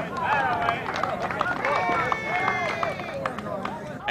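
Several voices of players and spectators at a softball game calling and shouting over one another, with a few short clicks among them.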